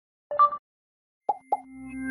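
Pop sound effects of an animated intro: one short pop, then two quick plops with a falling pitch about a second later, followed by a low held tone that swells toward a music sting.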